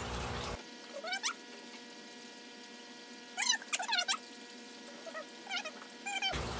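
Short, high, rising cries from a pet animal: one about a second in, a quick cluster of several around three and a half to four seconds, and two more near the end, over a quiet room.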